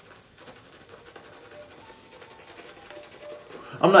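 Faint swishing of a shaving brush working shaving-cream lather on the face, with a few short faint tones. A man's voice starts near the end.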